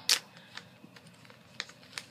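A sharp click, then a few faint ticks and light rustles from a small plastic parts bag and its cardboard header card being handled and opened.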